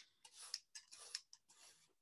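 Faint, brief rustles and light scrapes of yarn being pulled through the warp strings of a small wooden weaving loom, with a couple of soft ticks.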